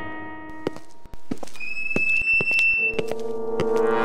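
Dramatic background score: a held chord fades away under scattered short percussive knocks. A thin high tone is held for about a second and a half, then a fuller low chord swells in near the end.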